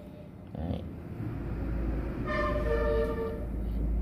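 A low rumble that builds up, with a horn sounding for about a second midway, as from a heavy road vehicle passing and honking.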